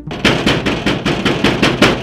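A rapid run of loud, sharp percussive hits, about six a second, that cuts off suddenly near the end.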